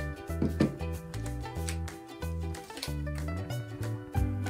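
Background music with a steady beat and a bass line that steps between notes.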